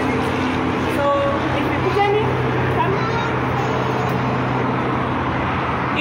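Steady rumble of road traffic from a busy road below, with a constant low hum running through it and faint voices over it.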